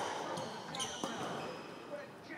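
Squash ball being struck by rackets and rebounding off the court walls during a rally: a couple of sharp smacks, echoing in the enclosed court. Brief high squeaks from shoes on the court floor come around the middle.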